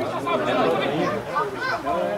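Several voices talking over one another: spectators chattering at a football match.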